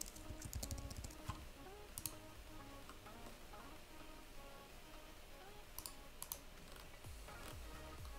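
Computer keyboard typing and a few sharp mouse or key clicks, with faint music in the background.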